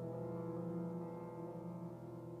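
Solo piano holding a sustained chord, its notes ringing on steadily.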